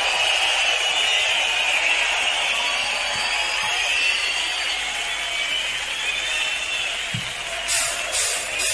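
A large concert crowd cheering and applauding, with some high wavering whistles. A few sharp clicks come in near the end.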